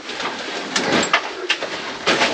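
Scuffing and scraping as people climb through a narrow rock mine tunnel, with a few sharp knocks in the middle.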